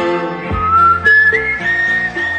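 A whistled melody over a Bollywood song's backing music. The whistle enters about half a second in, climbs in a few steps and then holds a high note.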